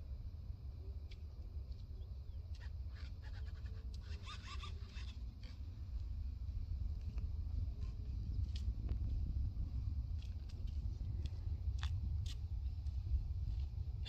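Wind buffeting the microphone, a steady low rumble, with a few faint ticks over it.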